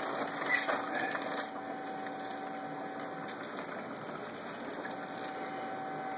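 Steady hum and water noise from aquarium equipment running, with a few handling rustles and clicks in the first second or so.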